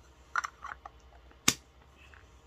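Hard plastic strawberry-shaped travel case being handled, with a few soft clicks and rustles and then one sharp click about one and a half seconds in.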